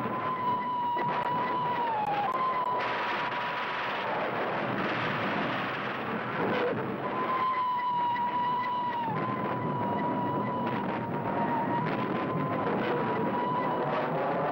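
Fighter aircraft engine noise: a steady, loud rushing drone with a held high whine whose pitch drops slightly twice, like planes passing overhead.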